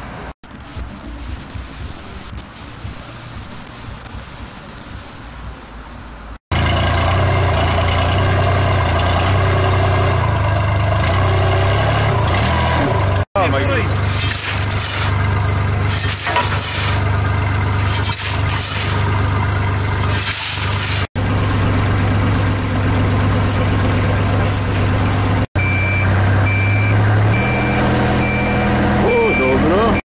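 Construction site on a waterfront: diesel engines of heavy machinery such as an excavator and a dumper run steadily. In the middle, a shovel scrapes and gravel clatters out of a dumper's skip. Near the end a vehicle's reversing beeper sounds, a high beep repeating a little faster than once a second.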